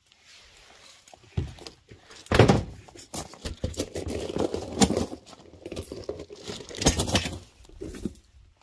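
Footsteps on gravel, irregular, with louder knocks about two and a half, five and seven seconds in.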